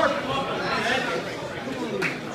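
Indistinct chatter of many people talking at once, echoing in a large hall.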